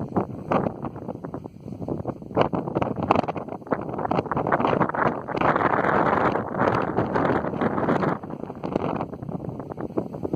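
Wind buffeting the microphone in irregular gusts on an exposed mountain top, loudest for about three seconds in the middle.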